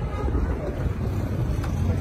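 Steady low rumble of a car driving, heard from inside the cabin, with faint voices over it.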